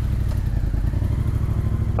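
A 2018 Yamaha MT-07's parallel-twin engine, fitted with an Akrapovič Racing Line exhaust, idling steadily with a low, even pulse.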